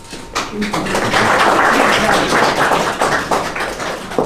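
Audience applauding: dense clapping that starts about a third of a second in, stays loud and thins out near the end.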